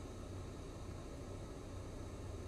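Faint steady low hum and hiss of a car's cabin background, with no distinct events.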